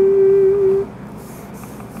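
A person humming a tune: the last note of a short rising phrase, held for about a second, then a pause.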